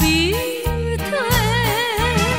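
Taiwanese Hokkien enka-style ballad recording. A female voice glides up into a held note and then sings with wide vibrato over a steady bass line.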